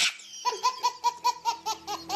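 A baby laughing hard, a rapid run of short high-pitched laughs at about five or six a second, starting about half a second in.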